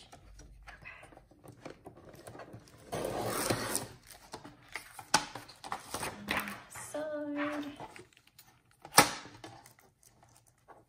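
Plastic laminated sheets crinkling and rustling as they are slid and lifted on a paper trimmer, with light handling clicks and a sharp knock near the end.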